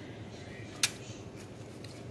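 One short, sharp click a little before the middle, over a faint steady background hum; a much fainter tick follows near the end.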